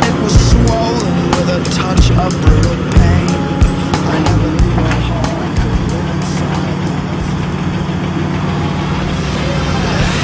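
Engine of a truck-mounted well-drilling rig running steadily, with sharp metallic clanks of drill pipe and chain, frequent in the first half and fewer later.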